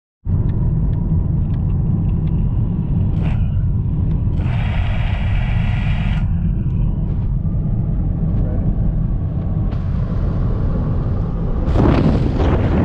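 Vehicle engine idling, a steady low rumble heard inside the cabin. A brief hiss comes in about four and a half seconds in and stops sharply under two seconds later, and a louder rush of noise rises just before the end.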